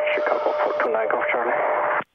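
Air traffic control radio transmission heard over the aircraft's intercom: a thin, narrow-band voice with a steady tone under it, cutting off abruptly at the end.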